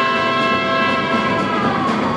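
Jazz big band of brass and saxophones holding a long sustained chord, which fades near the end as applause starts.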